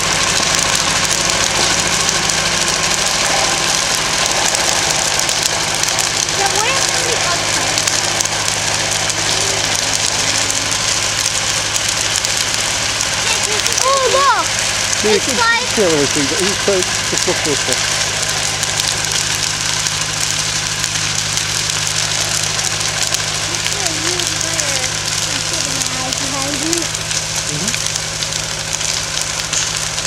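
A wooden outhouse burning as a large open fire, a steady rushing noise of flames with no break. A steady low hum runs underneath.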